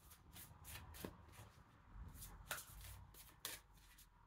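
An oracle card deck being shuffled by hand, overhand style: a faint, irregular run of soft card slaps and rustles, about two a second.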